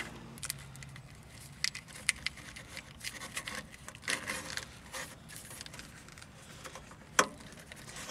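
Hands working wires and a plastic wiring loom along a Jeep's door sill and seat base: scattered rustles, scrapes and small clicks, with one sharper click about seven seconds in.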